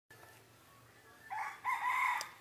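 Rooster crowing: one drawn-out call that starts a little over a second in.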